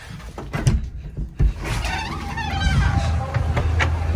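A few knocks from handling the phone, then wind rumbling on the microphone outdoors from about a second and a half in.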